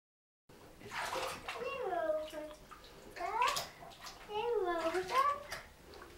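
Bath water splashing in a tub, mixed with a young child's wordless vocal sounds that glide up and down in pitch. The sound starts about half a second in.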